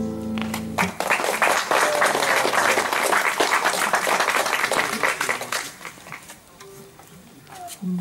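A duo's final sung note over nylon-string acoustic guitars rings out and stops about a second in, then audience applause follows for about five seconds and dies away.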